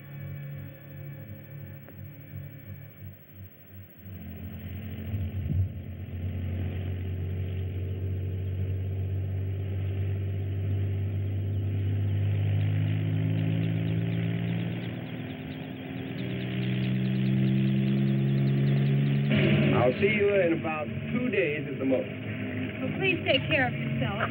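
Music ends in the first few seconds. Then a vehicle engine starts running, its pitch rising and falling as it revs. Near the end, louder wavering higher sounds join the engine.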